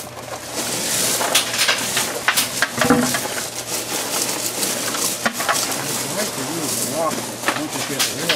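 Gravel being spread and smoothed by hand over the heating cables of a seedling heat table: stones scraping and rattling, with many sharp clicks as pebbles knock together.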